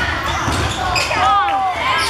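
Basketball game on a wooden indoor court: the ball bouncing and sneakers squeaking on the floor, with several short squeaks about a second in, over voices shouting.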